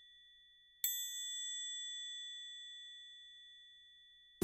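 A bright bell-like chime struck once about a second in, ringing with a few clear high tones that fade slowly. The ring of an earlier strike is dying away before it.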